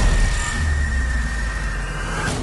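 Film-trailer explosion sound design: a deep rumble that swells about half a second in and holds, with a thin, steady, high-pitched ringing tone over it.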